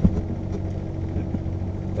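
Ferrari 458's V8 engine idling steadily, heard from inside the cabin, with a single short knock at the very start.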